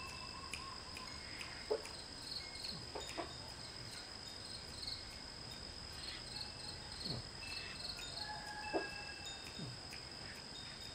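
Steady high-pitched insect trill, typical of crickets, with short clear ringing notes at several pitches scattered through it and a few soft knocks.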